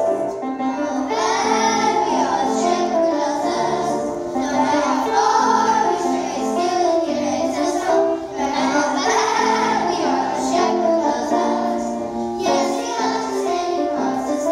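A children's choir singing a song together, with piano accompaniment holding chords underneath.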